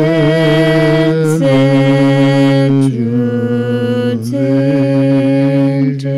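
A man's low voice chanting a Tibetan Buddhist mantra in long held tones. The note shifts about every second and a half.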